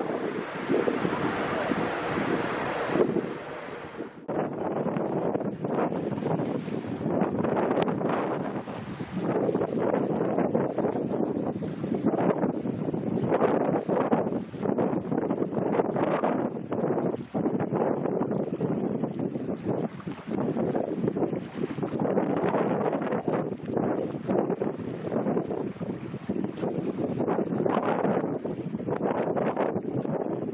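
Wind buffeting the microphone over a continuous rushing, crackling noise of an icebreaker's hull crushing through sea ice. The sound turns duller about four seconds in.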